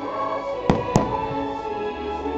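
Two aerial firework shells bursting with sharp bangs about a quarter second apart, a little under a second in, over steady music from the show's soundtrack.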